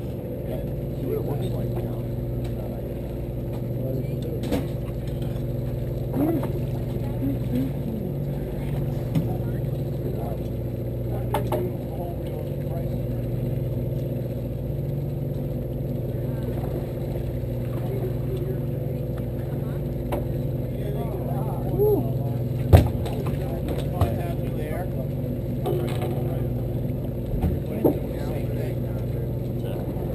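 A fishing boat's engine idling with a steady, even drone, under scattered knocks on deck and one sharp, loud knock about two-thirds of the way through.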